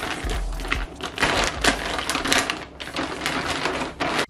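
Stiff plastic mailer bag crinkling in rapid, irregular crackles as it is handled and opened.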